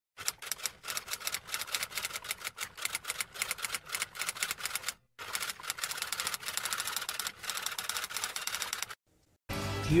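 Typewriter typing sound effect: rapid, continuous keystroke clicks in two runs, broken by a short pause about five seconds in. It stops just before the end, when music and a voice start.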